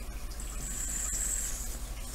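A gentle breath blown through the drip tip of an EHPRO Billow RTA tank, a soft hiss lasting about a second, pushing leftover e-liquid out of the air holes after filling.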